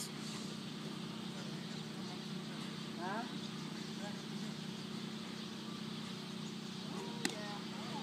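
A steady low hum runs throughout, with faint distant voices around three seconds in and again near the end. A single sharp click comes about seven seconds in.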